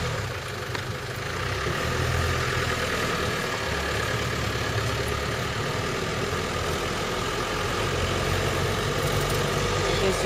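Engine of an open-topped off-road vehicle driving slowly along a dirt track. The low engine note shifts up and down a little, with road and wind noise over it.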